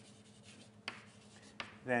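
Writing on a lecture board, with two sharp taps about a second apart; a man's voice comes in near the end.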